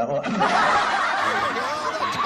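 Loud laughter starting a moment in and carrying on to the end, a cackling, wavering laugh.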